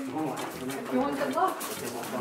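Indistinct voices of a group of people talking in the background, with short drawn-out vocal sounds.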